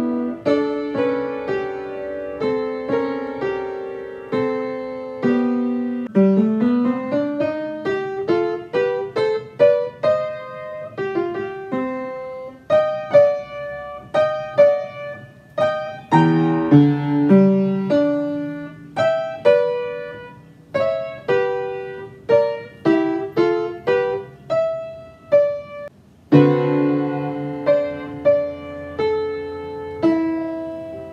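Upright piano played solo: a gentle classical piece of struck single notes and broken chords, with a rising run about six seconds in and a fuller, louder passage starting near the end.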